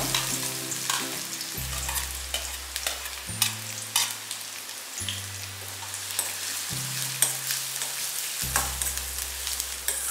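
Chopped onion and garlic sizzling in hot oil in a stainless-steel kadhai, with a steel spatula scraping and clicking against the pan as it is stirred. Soft background music with low held notes sits underneath.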